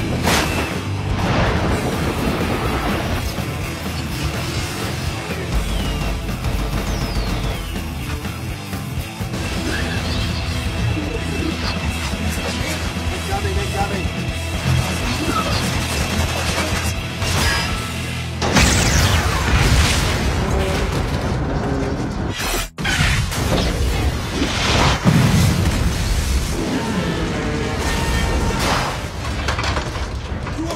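Film battle soundtrack: loud, steady score music over repeated booms and crashes of naval gunfire and explosions, the heaviest booms falling in the second half.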